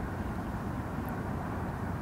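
Steady low rumble of outdoor background noise, even in level, with no distinct events.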